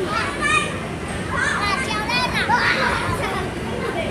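Young children's high-pitched voices and excited calls, loudest about a second and a half in, over a steady din of other children playing.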